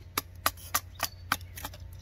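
A wooden baton knocking on the spine of a Cold Steel Pendleton Mini Hunter knife, batoning it down through a piece of wood: a quick, even run of sharp knocks, about three or four a second.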